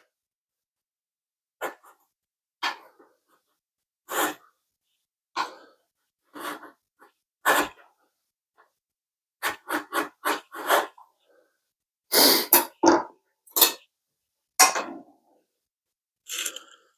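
Hand file scraping along the edge of a DeWalt DCS573 circular saw's metal base plate in about fifteen separate strokes, spaced out at first and coming in quicker runs in the second half: the plate's edge is being filed true, parallel to the blade.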